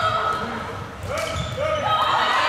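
Floorball being played on a sports-hall court: players' shoes squeaking on the floor, sticks and ball clicking, and players and spectators shouting, all echoing in the large hall.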